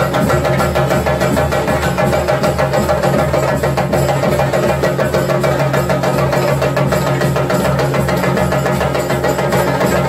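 Chenda drums of a theyyam ensemble beaten with sticks in a fast, unbroken stream of strokes, loud and even, with steady held tones sounding beneath.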